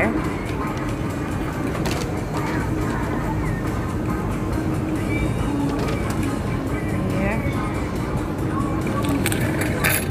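Steady indoor ambient noise of a large shopping mall, with faint voices in the background.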